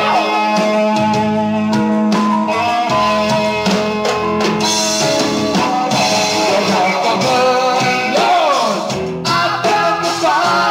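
Live rock band recording playing, with guitar and drums; sliding, bending notes come near the start and again about eight seconds in.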